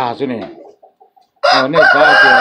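A rooster crowing: after a short pause, one loud, long crow begins about one and a half seconds in.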